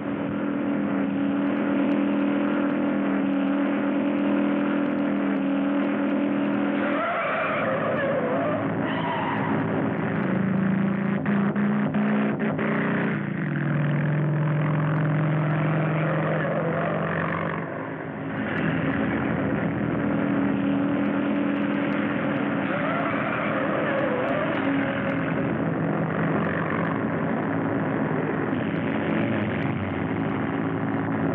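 Motorcycle and truck engines running at road speed in a chase, heard through an old film soundtrack. The engine pitch drops about a third of the way in and rises again past the middle.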